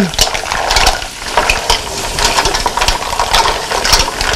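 Mussels in their shells being stirred with a wooden spoon in a stainless steel sauté pan, the shells clicking and knocking against each other and the pan in an irregular patter over the sizzle of butter and oil.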